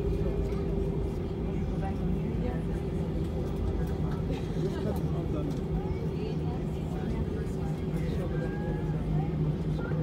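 Cabin noise inside an Airbus A320 taxiing after landing: the steady hum of its IAE V2500 engines and airframe, with a low drone and a higher steady tone that fades near the end.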